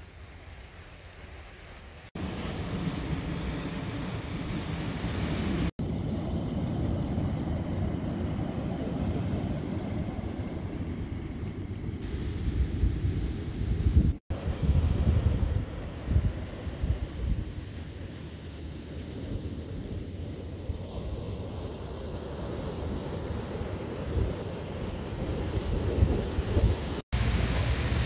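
Wind buffeting the microphone over waves washing on a rocky shore. It is quieter for the first two seconds and cuts out for an instant a few times.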